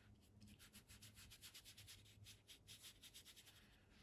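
Faint, quick repeated strokes of a wet paintbrush rubbing across textured watercolour paper, several strokes a second, as paint is laid into a wash.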